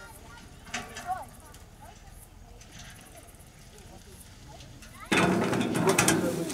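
Hunting vehicle's engine idling faintly as a steady low rumble, with a few faint voices about a second in. About five seconds in the sound cuts abruptly to a much louder mix of people moving about and talking.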